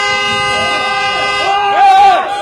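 A horn sounding one long, steady blast. Voices shout over it from about one and a half seconds in, loudest near the end.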